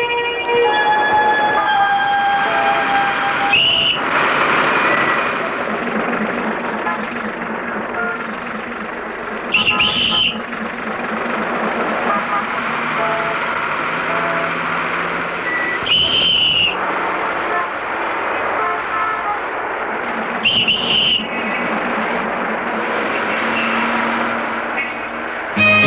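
Steady street noise with four short, shrill whistle blasts spread a few seconds apart, over faint background music.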